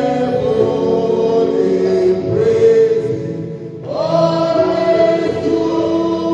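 Gospel song sung by a man into a handheld microphone, with several other voices singing along and no instruments. Long held notes, a short dip about three and a half seconds in, then a new, higher held note.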